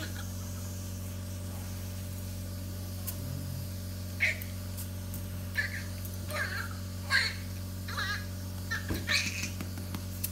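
A newborn baby's first cries just after delivery by caesarean section: a series of short, high wails starting about four seconds in and coming more often towards the end, over a steady low hum.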